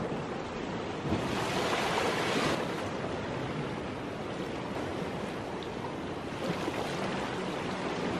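Small waves breaking and washing up a sand beach: a steady surf wash that swells a little about a second in.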